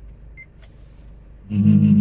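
Car cassette radio seeking to a new station: a short high beep as the seek button is pressed, a muted gap, then music from the new station cuts in loudly about a second and a half in.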